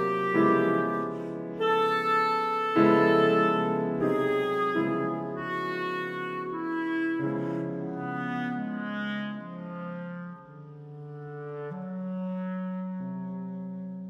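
Clarinet and grand piano playing a duo, loud at first and growing softer, settling into long quiet held low notes in the last few seconds.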